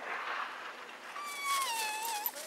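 A West Highland white terrier whining: one high whine that starts a little past halfway and slides down in pitch.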